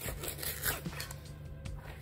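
A kitchen knife sliding flat along a plastic chopping board, between the skin and the flesh of a lemon sole fillet, making soft scraping, tearing strokes over a steady low hum.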